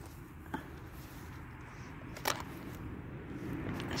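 Quiet background with a steady low rumble and two brief clicks, a faint one about half a second in and a sharper, louder one a little past two seconds in.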